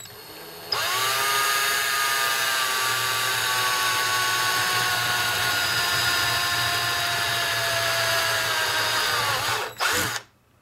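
Cordless drill with a 1/8-inch bit drilling a small pilot hole through the antenna tuner's case: the motor comes up to speed under a second in, then runs as a steady whine that sags slowly in pitch as the bit cuts. It stops right at the end.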